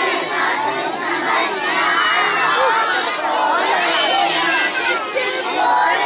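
A large crowd of children shouting and calling out together, many voices overlapping at a steady level.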